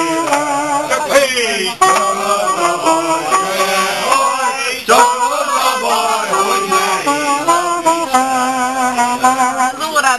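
A single-reed wind instrument (tárogató or saxophone) playing a Hungarian folk song (nóta) with long vibrato notes, with men's voices singing along.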